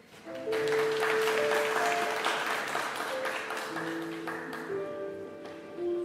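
Applause that rises just after the start and thins out after about four seconds, over music with long held notes that carries on.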